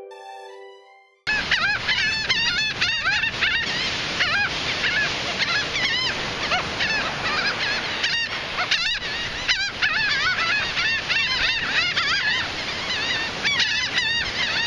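A flock of laughing gulls calling nonstop, many short overlapping cries, over the steady wash of surf. It starts suddenly about a second in, after a fading musical tone.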